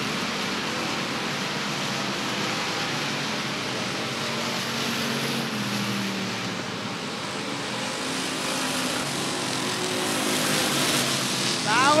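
Race car engines of a stock-car field running at speed around a paved short-track oval, a steady drone of motors and tyres with a slight fall in pitch about halfway through as cars go by.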